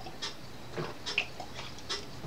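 A person drinking from a glass: a few soft, separate swallowing and mouth sounds, one with a brief squeak.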